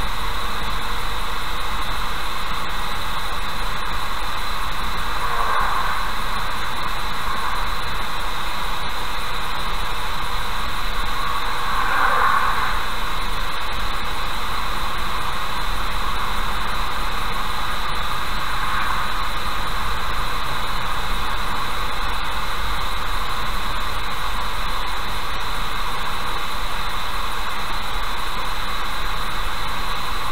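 Steady road noise of a car driving at about 60 km/h, picked up by a dashcam microphone, with brief swells about five seconds in and again around twelve seconds.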